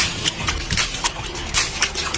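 Aquarium water sloshing hard and splashing over the tank's rim as the earthquake shakes it, with many irregular knocks and rattles.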